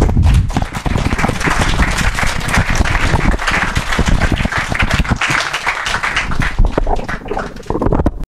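Audience applauding, a dense, even clatter of many hands clapping, with a few low thumps on a headset microphone in the first second.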